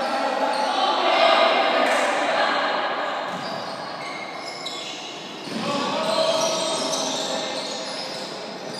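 Basketball game in a large, echoing sports hall: the ball bouncing on the court amid players and spectators calling out, with the noise swelling about a second in and again about six seconds in.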